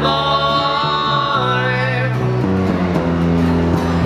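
Two male voices hold a long sung note in harmony over an electric bass and a strummed acoustic guitar; the voices stop about two seconds in while the bass and guitar carry on.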